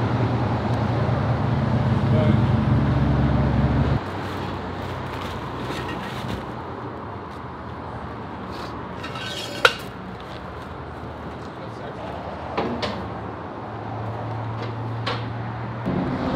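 Ford Raptor's 6.2-litre V8 idling steadily on its old exhaust with a home-made resonator delete, cut off suddenly about four seconds in. Then quieter workshop background with scattered metal clinks and knocks as exhaust parts are handled.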